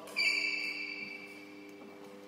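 A sharp knock followed by a high ringing ping that fades away over about a second and a half, over a steady low hum in the hall.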